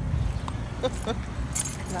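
Low steady rumble with a few faint clicks, and a brief jingle about three-quarters of the way through.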